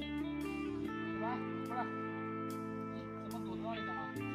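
Background music with guitar, held chords that change about a second in.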